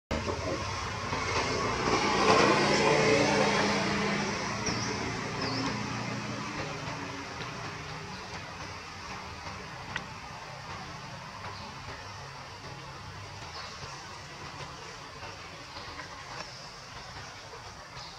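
A motor vehicle passing, loudest about two to three seconds in and then slowly fading into a low background hum.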